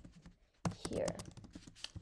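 Typing on a computer keyboard: a string of separate keystroke clicks at an uneven pace.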